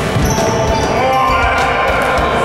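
Futsal match in an echoing sports hall: ball thuds and short shoe squeaks on the wooden court, with players' voices.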